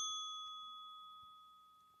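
A single bell-like ding, struck once and ringing out, fading steadily over about two seconds.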